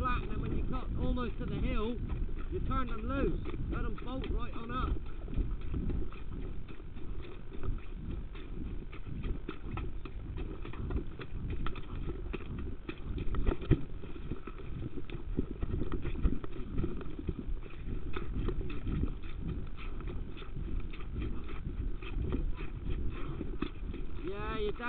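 Hoofbeats and movement noise of a horse being exercised, a steady low rumble dotted with irregular knocks. A person's voice is heard over it for the first few seconds.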